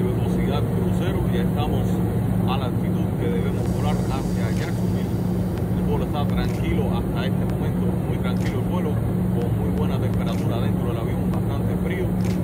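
Steady low drone of an airliner cabin in cruise, engine and airflow noise, with a man's voice talking over it.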